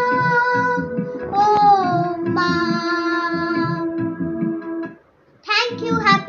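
A child singing long held notes over a plucked guitar accompaniment with a steady beat. The song stops about five seconds in, and after a short silence the child's voice starts again.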